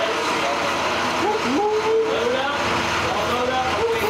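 Several young voices chattering together over the steady low running of an idling school bus engine.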